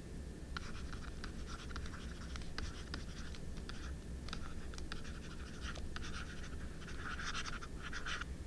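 Stylus writing on a tablet's screen: a rapid run of small taps and ticks, with longer scratchy pen strokes near the end.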